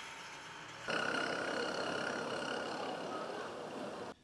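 Outdoor street ambience: a steady hum of traffic noise that steps up in level about a second in.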